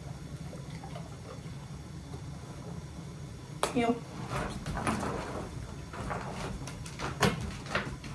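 A short voice-like sound, then a run of irregular clicks, scuffs and knocks as a puppy jumps up against a person on a wooden floor, the sharpest knock about seven seconds in.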